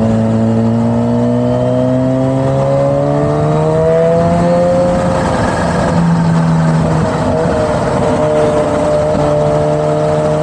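Supercharged inline-four engine of a Kawasaki Z H2 pulling under steady throttle on the highway, rising slowly in pitch for about five seconds. It eases off with a brief rough patch, then holds a steady cruise, with wind and road noise throughout.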